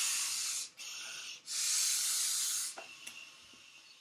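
A rubber balloon being blown up by mouth: two long, breathy blows into it, the first ending just under a second in and the second from about a second and a half to nearly three seconds, with a softer breath between them.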